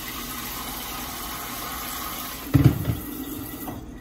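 Kitchen sink tap running steadily. A brief low thump comes about two and a half seconds in, and the water stops near the end.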